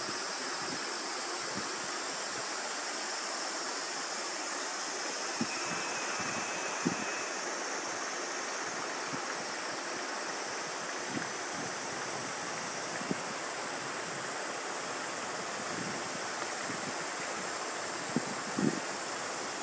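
Steady rush of a small mountain stream, an even hiss that does not change, with a few faint soft knocks now and then.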